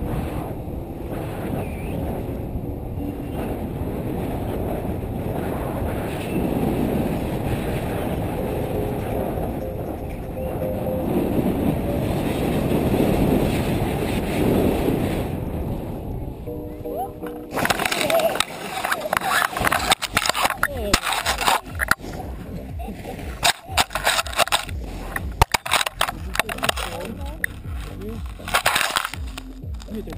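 Steady wind rushing over the microphone as a tandem paraglider glides. A little past halfway it gives way to a run of irregular scraping, crackling and knocks as the paraglider touches down and slides on snow.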